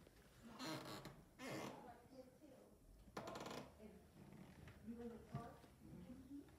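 A quiet room with a few brief soft rustles in the first few seconds and faint low voices near the end.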